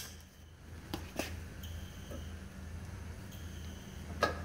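Two light clicks about a second in as hydraulic hoses and their quick couplers are handled, over a steady low hum.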